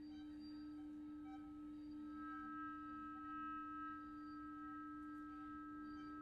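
Quiet contemporary chamber music with long, steady held notes from bowed strings and flute. A low note holds throughout, a high sustained tone joins about two seconds in, and another held note comes in near the end.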